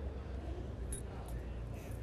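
Quiet background ambience of an outdoor bowling green under a TV broadcast: a low steady rumble with a few faint clicks about a second in.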